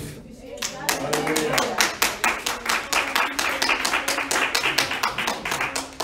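Hands clapping in a quick, steady rhythm, about four to five claps a second, starting about a second in, with faint voices underneath.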